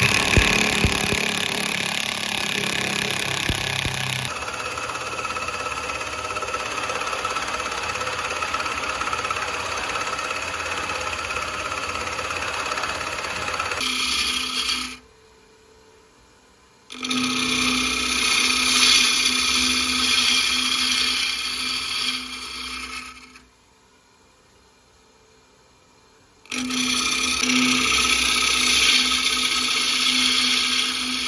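A power drill driving screws to fix a steel faceplate to a sapele bowl blank. Then a wood lathe spinning the blank while a bowl gouge cuts out its inside: a steady hiss of cutting over the lathe's hum. The sound drops out twice for a few seconds.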